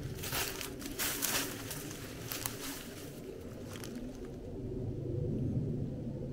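Footsteps crunching and rustling through dry leaf litter and dead grass and bamboo, with several crackly steps in the first three seconds, then quieter. A low rumble swells near the end.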